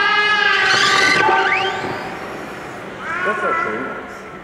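A person's voice calling out a long held note in a reverberant hall, with a second, shorter call near the end.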